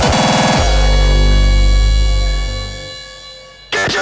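Hardstyle electronic dance music: a fast roll of repeated kick-drum hits for about half a second, then a long held low synth chord that fades away over about three seconds. The full beat comes back in loudly just before the end.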